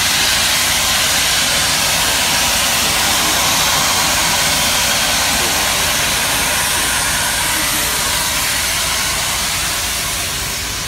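Norfolk & Western 611, a class J 4-8-4 steam locomotive, venting steam in a loud, steady hiss with a low rumble underneath, easing off slightly near the end.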